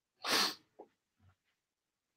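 A man's single short, sharp breath out through the nose, about a quarter second in, followed by a couple of faint small sounds.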